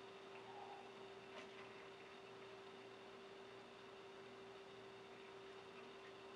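Near silence: quiet room tone with a steady faint hum and a faint click about a second and a half in.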